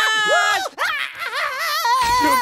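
Cartoon character voices yelling and screaming: a held, high-pitched cry, a brief break, then more excited shouting.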